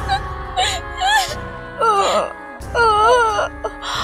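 Dramatic background music with a woman's wailing, whimpering cries in several separate bursts, the loudest about halfway through and again about three seconds in.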